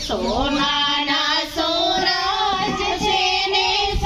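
A female voice singing a slow, melodic song with long held, gliding notes, broken by a short pause about a second and a half in.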